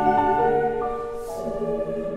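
Mixed choir singing slow, sustained chords, the held notes shifting to a new harmony a few times.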